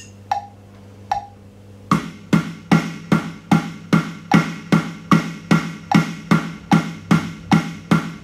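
Electronic drum kit's snare played in steady alternating eighth notes, about two and a half strokes a second, in time with a 75 BPM click track. For the first two seconds only the click ticks, once every 0.8 seconds, before the strokes come in.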